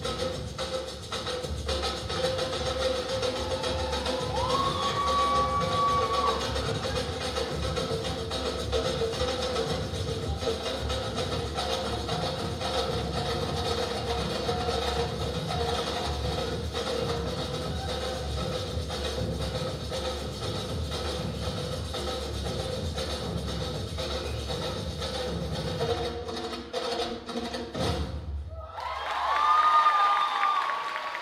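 Salsa music with prominent percussion playing for a dance routine, stuttering and cutting off abruptly a couple of seconds before the end; the audience then starts cheering and clapping.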